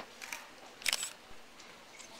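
Quiet room tone with a few short, sharp clicks, the loudest pair about a second in.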